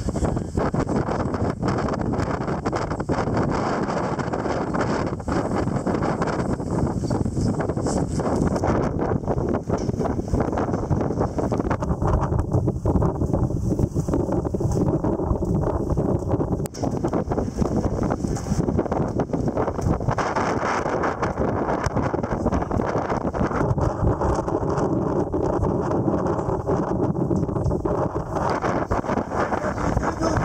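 Wind buffeting the microphone, a loud steady rumble. A faint low hum comes in twice, once in the middle and once near the end.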